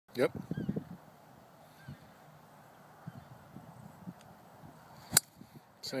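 Golf driver striking a ball off the tee: one sharp crack about five seconds in.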